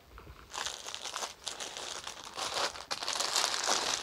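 Clear plastic saree packaging crinkling and crackling as it is handled. The crackling starts about half a second in and grows louder toward the end.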